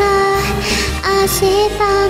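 A woman singing a Japanese Vocaloid song over a backing track, with long held notes.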